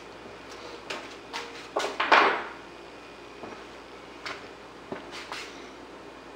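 Steel fuel-injector parts being handled and set down on a wooden workbench: a scatter of light knocks and clinks, the loudest about two seconds in.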